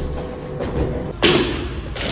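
A single loud thump about a second in, trailing off over about half a second, over low background noise.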